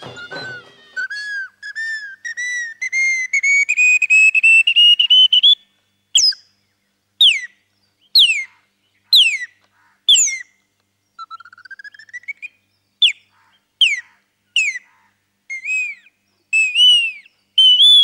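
Bird calls imitated on a small hand-held whistle pipe. A run of quick chirps climbs steadily in pitch, then come high whistled notes, each swooping sharply downward about once a second, with one slower rising glide in the middle and arched, rise-and-fall notes near the end.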